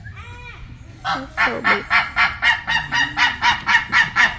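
A large bird calling in a rapid run of loud, evenly spaced calls, about four a second, starting about a second in.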